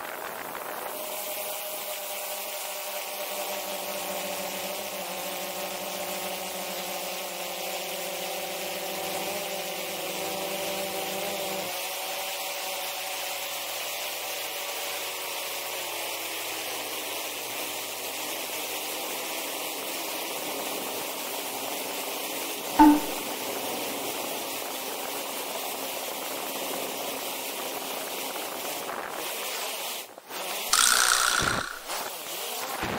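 DJI Phantom 4 quadcopter's motors and propellers humming steadily, picked up by a camera mounted directly beneath the drone, with wind hiss over it. The hum's pitch drifts slightly, and one sharp click comes about two-thirds of the way through.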